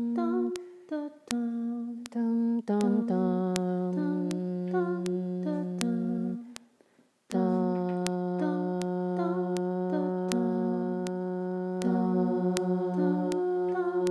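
A looper app plays back a looped hummed arpeggio of short repeating notes over steady metronome clicks, while a woman's voice holds one low note as a drone being overdubbed on top. The drone comes in about three seconds in, breaks off for about a second near the middle, then resumes and holds.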